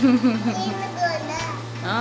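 A toddler's high-pitched voice calling out and babbling while playing.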